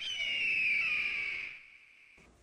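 A high-pitched squeal that starts suddenly and glides down in pitch, fading out after about a second and a half.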